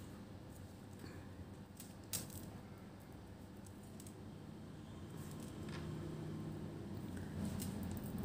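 Faint light taps and slides of Lenormand cards being straightened on a tabletop by hand, with one sharper tap about two seconds in.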